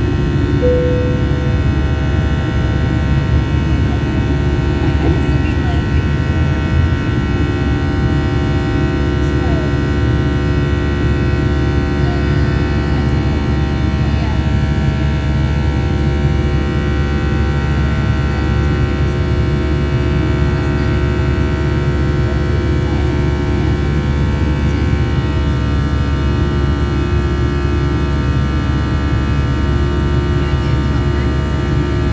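Airliner cabin noise in the climb after takeoff: the jet engines running steadily, a constant hum of many steady tones over a low rumble.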